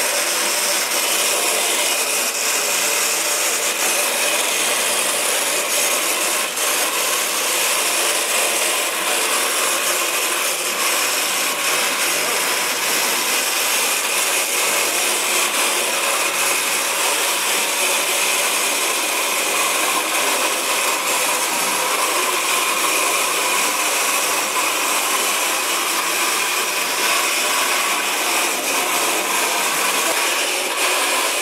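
Small electric gear motors of two tethered hobby robots whirring steadily while the robots drive and push against each other, a continuous mechanical whine with no pauses.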